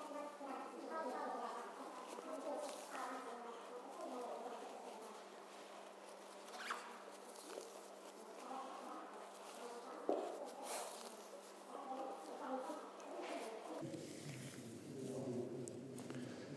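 Faint, indistinct murmur of voices echoing around a large sports hall, with occasional rustles of nylon parachute canopy fabric as its panels are lifted and laid over.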